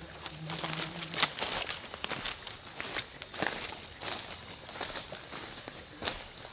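Irregular crunching and rustling outdoors, about one crunch a second, over a light background hiss.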